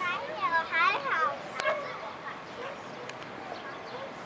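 Children's voices at a playground: a quick run of high-pitched calls in the first second or so. A single sharp click follows, then quieter background.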